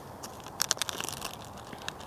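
Plastic zip-top bag crinkling as it is handled and chopsticks reach in for sliced raw ribeye, a run of quick, uneven crackles.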